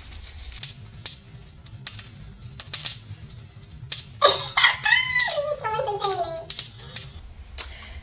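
Bubble wrap being popped by hand: a quick, irregular run of sharp snaps. About halfway through, a woman's voice joins in with a drawn-out, wordless sound that rises and falls in pitch.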